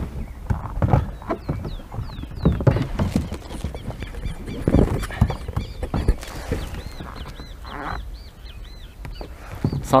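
Birds calling outdoors, a long run of short, repeated high chirps, over irregular low knocks and bumps of the camera and kayak being handled at the water's edge.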